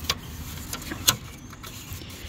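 A few light clicks and taps of a wire retaining ring being worked into the clips on the back of a plastic hubcap, the sharpest click about a second in, over a low steady rumble.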